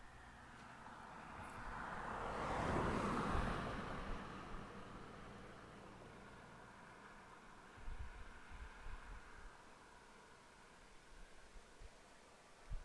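A vehicle passing by: a noisy rush that swells to a peak about three seconds in and fades away over the next few seconds, followed by a few soft low thumps.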